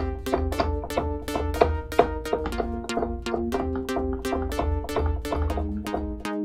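Korg opsix six-operator FM synthesizer playing its "5th Stab" preset: short, plucky chord stabs repeating about five times a second over a pulsing low bass. The chord changes twice.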